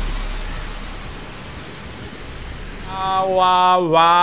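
Even hiss of sea water washing, fading away over the first three seconds. About three seconds in, a voice starts holding one long sung note, louder than the water.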